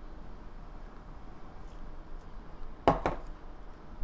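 Faint room noise, then about three seconds in two quick sharp clinks of a metal spoon against a ceramic bowl while sesame seeds are sprinkled over the dish.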